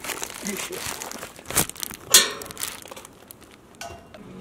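Rustling, crinkling handling noises with scattered clicks and one sharp clack about two seconds in.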